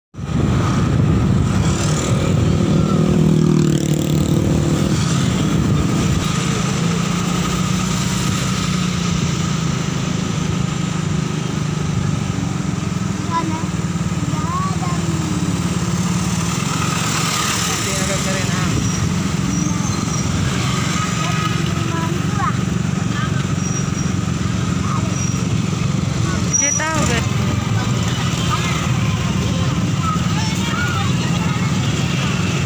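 Road traffic noise in slow, congested traffic: vehicle engines running steadily, with some shifts in engine pitch in the first few seconds.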